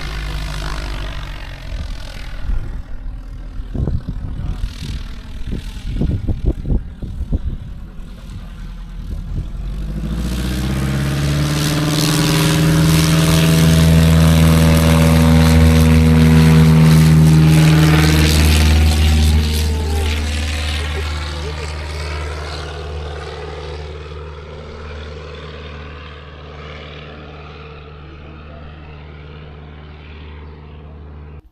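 A light propeller aircraft's engine and propeller passing along the runway. It grows louder over several seconds, is loudest about halfway through, then fades steadily away.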